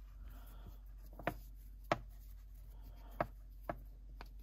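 Hands working a braided rope through a knot: faint rubbing and rustling of rope fibres against each other and the fingers, with four small clicks or taps scattered through.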